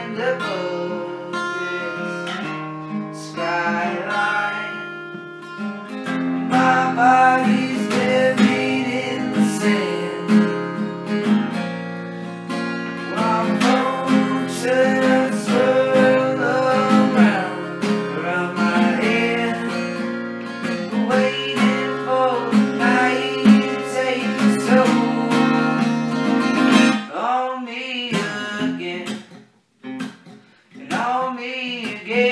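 Acoustic guitar strummed and picked in a song, with full chords throughout; the playing thins out and stops for about a second near the end.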